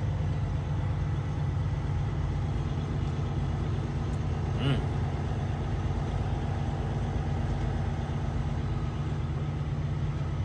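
Semi-truck's diesel engine running steadily, a low drone heard from inside the cab, with a short pitched sound about halfway through.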